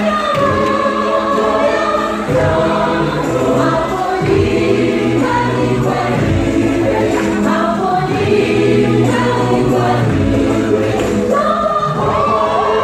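Gospel choir singing in several voice parts, loud and continuous, moving between held chords over a low bass line.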